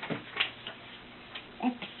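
A few light clicks and taps, then a toddler starts to say a word near the end.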